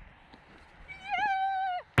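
A woman's high-pitched joyful shout of 'yeah!', held for about a second with a wobble at its start, after a second of faint background.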